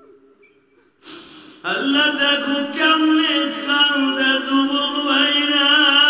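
A male preacher chanting his sermon in a long, drawn-out sing-song tune through a loud public-address system. A held note fades out, a brief hiss follows about a second in, and the chant starts again loudly about a second and a half in, holding and wavering on long notes.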